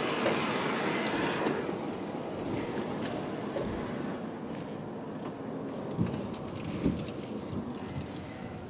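Steady low noise of a car moving slowly, heard from inside its cabin, with two soft thumps near the end.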